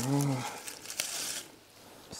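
Pineapples handled by their stalks: a click about a second in, then a brief dry rustle of stalks and leaves as they are gathered up. A short voice sound comes at the start.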